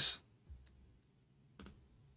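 The tail of a spoken word, then a faint low hum with one short sharp click about one and a half seconds in.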